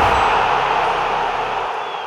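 Logo-intro sound effect: a wash of hiss-like noise that slowly fades, with a low rumble under it that drops away near the end.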